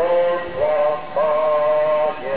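A slow hymn sung by the procession's voices, long held notes that step to a new pitch every half second to a second.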